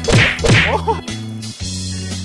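Two sharp whacks about half a second apart near the start, each with a quick falling swish, over background music with a steady bass line.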